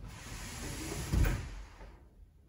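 Samsung WW90J5456FW front-loading washing machine tumbling wet laundry in soapy water: water sloshing in the drum, with a dull thump a little over a second in as the load drops. The drum stops turning near the end.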